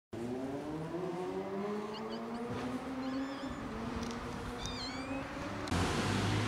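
A small kitten meowing: a few short, high-pitched calls, the last one near the end the clearest. A steady low engine hum runs underneath.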